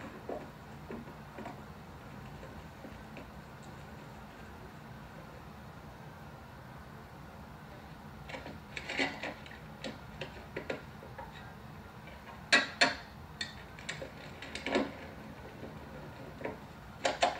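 Quiet steady background with faint ticks, then from about halfway in, irregular clatter and sharp wooden knocks from a wooden tunnel trolley on rails being loaded and pushed, the loudest knocks near the end.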